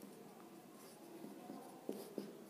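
Marker pen writing on a white board: faint scratching of the pen strokes.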